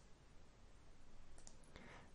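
A few computer mouse clicks in quick succession about one and a half seconds in, over faint room tone.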